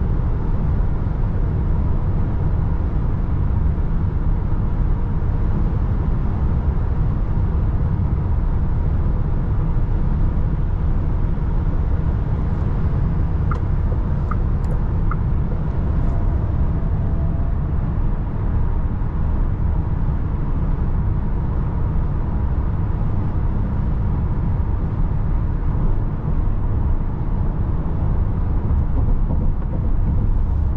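Steady road and wind noise inside the cabin of a 2023 Volkswagen ID. Buzz Cargo electric van cruising at highway speed: a constant low rumble from the tyres and the airflow.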